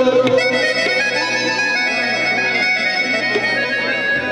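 Harmonium playing an instrumental passage of a Saraiki folk song, its reeds sounding steady held notes, with tabla accompaniment underneath.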